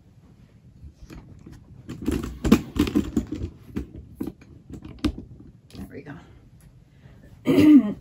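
Irregular rustling and light clicking as things are handled, loudest for a few seconds in the middle. Speech starts near the end.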